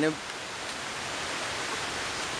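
Steady hiss of falling water, an even rushing noise with no rhythm or change.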